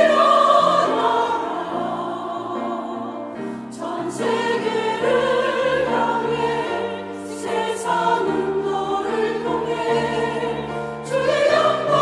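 A woman soloist and church choir singing a Korean worship anthem over instrumental accompaniment, with long held sung notes and a steady low accompaniment line.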